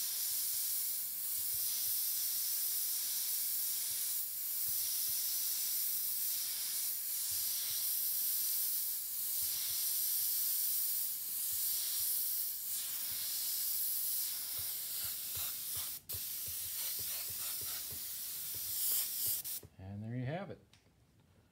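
Airbrush spraying paint with a steady high hiss of compressed air, swelling and dipping slightly every second or two. The hiss cuts out for an instant about four seconds before the end, and stops just before the end.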